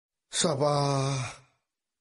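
A man's voice giving one drawn-out, sigh-like vocal sound of about a second, starting about a third of a second in with a breathy rush, then dipping slightly in pitch and holding level before fading.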